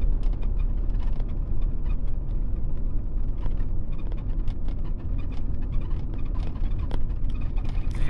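1988 Ford F-250's 7.3-litre IDI V8 diesel running at low revs, a steady low growl heard from inside the cab.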